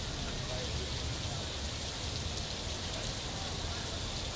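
Water falling in many thin streams down a rain-curtain fountain and splashing into its trough: a steady, even rushing like heavy rain.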